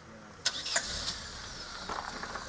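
A car engine nearby starts about half a second in with a sharp click, then keeps running steadily with a low rumble.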